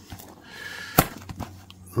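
Small cardboard box handled and turned over in the hands: a soft rubbing scrape with a thin squeak, and one sharp click about halfway through.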